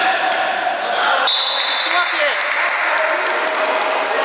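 Echoing din of many shouting voices in an indoor sports hall, with a shrill high tone held for about a second midway.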